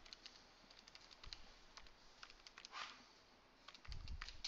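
Faint, irregular clicks of calculator keys being tapped, with a brief soft hiss about three seconds in.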